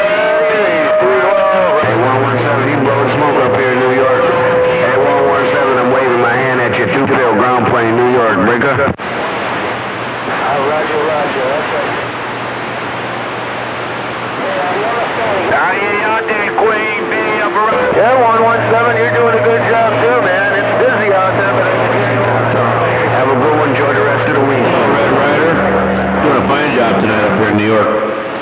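Distant CB radio stations coming in on skip through the radio's speaker: several garbled voices talk over one another, with steady whistling tones and a low hum under them. The signal fades weaker for several seconds partway through, then comes back strong.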